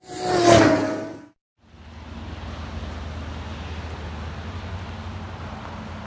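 A loud whoosh lasting about a second, then steady vehicle noise, a low hum under a hiss, for the rest.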